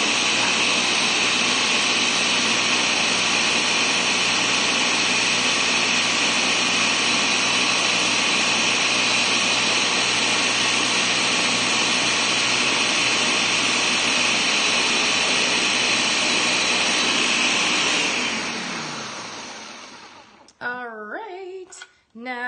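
Ninja Professional 1100-watt countertop blender running steadily as it purées carrot soup, then winding down with a falling pitch about 18 seconds in as it is switched off.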